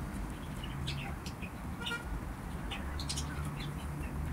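Small birds chirping now and then, short high calls scattered over a steady low background hum.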